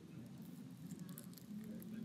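Quiet room tone with faint scattered ticks and a brief faint hum near the end.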